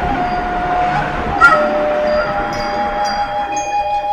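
Long, steady bell-like ringing tones. One held tone gives way to two others about a second and a half in, and higher tones join during the second half.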